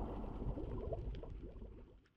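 Bubbling sound effect: a dense run of small bubbles gurgling, fading away toward the end.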